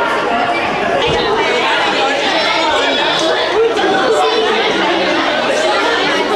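Crowd chatter: many people talking at once in a large hall, with no single voice standing out.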